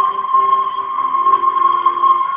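A group of recorders holding one long high note together, slightly out of tune with one another, over quieter lower notes that change about halfway through.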